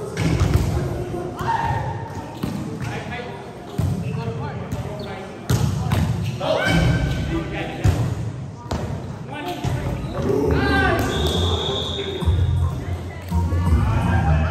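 A volleyball rally in a large gym: sharp hand-on-ball impacts from passes, sets and hits, repeated every second or two and echoing in the hall, with players shouting and calling over them.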